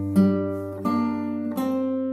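Acoustic guitar fingerpicked slowly in an arpeggio pattern: a low bass note rings on while higher strings are plucked three times, about 0.7 s apart, each left to ring out.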